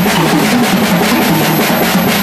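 Live rock band playing loud: electric guitars over a drum kit, with a steady run of drum hits and no pause.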